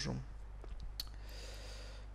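A single sharp click on a laptop about a second in, followed by a soft breath into the microphone, over a steady low hum.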